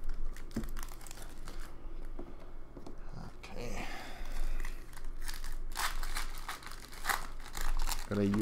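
Trading-card pack wrappers crinkling and tearing and a stack of cards being handled and flicked through, a run of crisp crackles and clicks.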